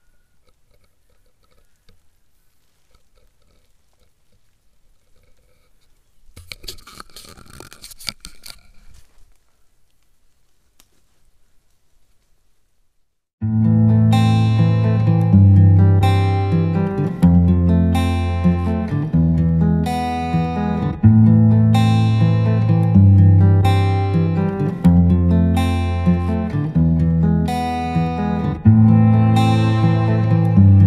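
Faint background with a brief burst of noise about six seconds in, then acoustic guitar music starts suddenly about halfway through, strummed chords repeating about once a second.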